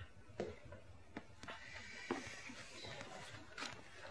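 Faint, irregular footsteps and light knocks in a quiet room, a handful of soft steps spaced unevenly across a few seconds.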